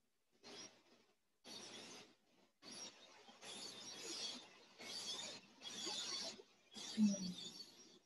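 Faint outdoor background noise with small bird chirps. It cuts in and out in short stretches of about a second, with dead silence between them.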